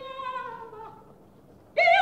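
Operatic singing from an old live opera recording. A soft held note slides downward and fades away, then near the end a loud high soprano note with a wide vibrato starts.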